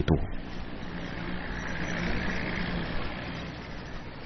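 Engines of motorized cargo barges running steadily on a canal: a low hum under a wash of noise that swells slightly in the middle.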